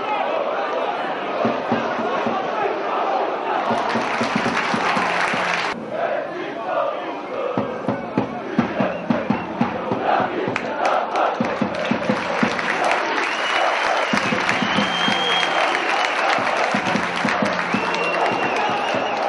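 Football crowd in the stadium chanting and shouting, with a run of sharp rhythmic beats in the middle and some high gliding tones near the end.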